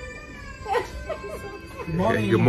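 A long, high-pitched whining voice that slowly falls in pitch, followed by brief snatches of chatter.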